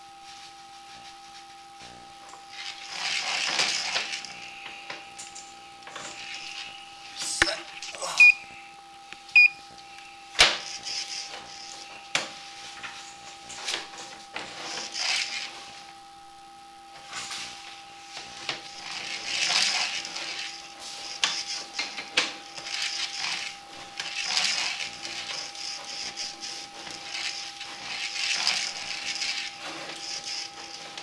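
Sewer inspection camera's push cable moving through the drain line in repeated pulls, each a rushing swell every four to five seconds, over a steady electronic whine from the camera unit. A few sharp clicks come between about seven and ten seconds in.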